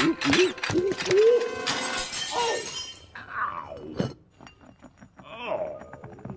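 A stack of china plates and a teapot crashing down and shattering on a hard floor: a burst of smashing and clinking over the first two seconds, with a man's wavering cry as he slips. Scattered clinks and a couple of falling whistling glides follow.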